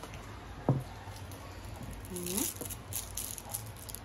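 A child tasting candy: a short rising hummed 'mm?' about two seconds in, over faint crackly clicks of chewing. A single brief thump comes under a second in.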